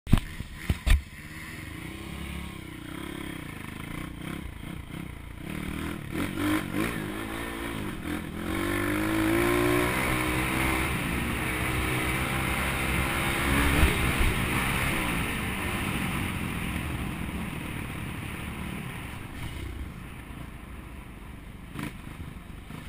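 Small pit bike engine running, a couple of sharp knocks right at the start, then revving up and pulling away about 8 seconds in, running harder through the middle and easing off near the end.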